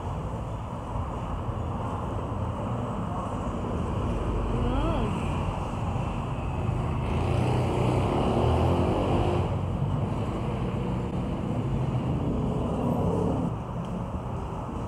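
Steady low background rumble of road traffic, with faint voices in the background.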